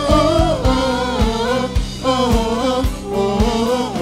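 Live gospel worship music: singers holding long, gliding sung notes over a guitar-and-drums band, with the drums keeping a steady beat of about two strokes a second.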